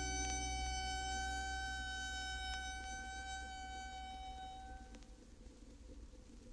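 The last held chord of a song on a vinyl record dies away over about five seconds, leaving the faint hiss and small clicks of the record's surface noise in the gap between tracks.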